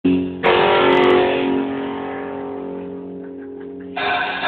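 Live band's electric guitar: a chord struck about half a second in and left to ring, slowly fading, before the full band comes in at the end.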